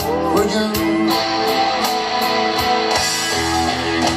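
Electric guitar solo on a Stratocaster-style guitar, sustained notes with string bends, over a backing track with bass and a ticking beat.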